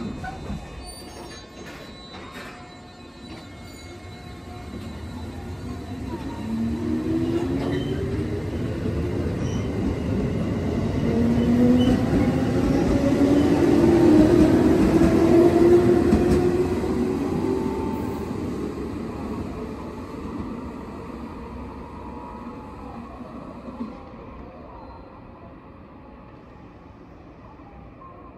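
A 10-car JR Central electric train (313 series 1500 subseries coupled with 211 series 5000 subseries) pulls away from the platform. Its motor whine rises in pitch as it accelerates, growing loudest about halfway through, then fades as the train leaves.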